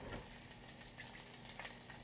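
Faint steady sizzle of food frying in a little oil in a pot on the stove.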